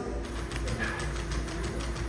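Unitree quadruped robot dog walking on a hard floor, its feet tapping in quick, irregular clicks.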